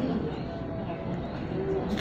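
Faint bird calls: a few soft, low, brief tones.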